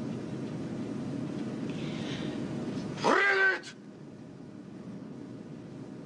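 A low steady rumble. About three seconds in, a person gives a short, loud, high-pitched cry that rises and then holds for about half a second. The rumble drops away as the cry ends.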